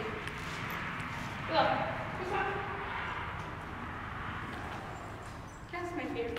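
Faint voices over a steady low hum, with one short falling call about a second and a half in.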